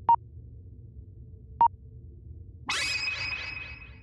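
Cartoon outer-space sound effects: a low electronic hum with a short, pure beep twice, about a second and a half apart. About two-thirds of the way in, a shimmering sparkle sound comes in, steps down in pitch and fades away.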